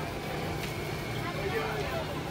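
Indistinct voices of several people talking at a distance over a steady low rumble.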